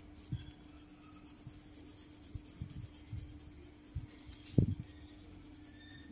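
Coloured pencil and a sheet of colouring paper handled on a cutting mat: quiet scattered taps and rubbing, with one louder knock about four and a half seconds in, over a faint steady hum.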